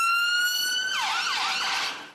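London ambulance siren sounding: a high steady tone for about a second, then switching to quick rising-and-falling sweeps that stop near the end.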